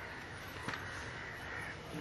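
Faint background noise with distant bird calls, and a single small click about two-thirds of a second in.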